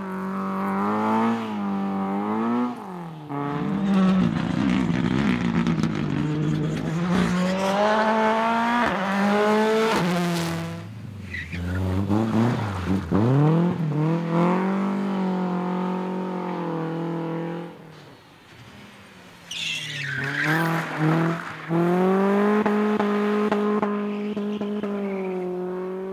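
Rally cars passing one after another as they slide through a corner, engines revving hard and rising in pitch through the gears as they pull away. There are short breaks between cars.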